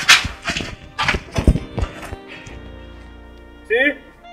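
Background film music with about seven sharp knocks or thuds in quick succession over the first two and a half seconds. Near the end comes a short cry with a gliding pitch.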